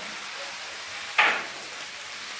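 Sliced potatoes, onions and bell pepper sizzling as they fry in a pan, with one short loud scrape of the spatula stirring them a little over a second in.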